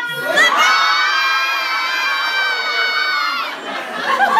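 A crowd of party guests yelling and cheering together in one long held shout, the surprise-party shout as the birthday woman walks in. It breaks off near the end.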